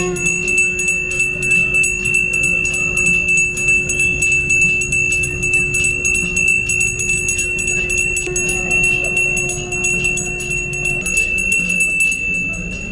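Brass pooja hand bell rung rapidly and without pause during the lamp-waving ritual (aarti), a continuous high ringing. A steady low tone is held over it from the start until near the end, changing slightly about eight seconds in.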